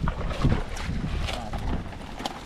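Wind buffeting the microphone, with irregular rustles and knocks as fish are tipped from a mesh net bag into a plastic feed sack.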